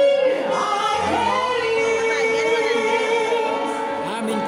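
Music with singing: a melody of long held sung notes, possibly several voices together.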